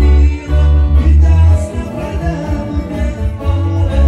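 Live sierreño band playing a corrido instrumental passage: acoustic guitar picking lead lines over a deep, pulsing bass.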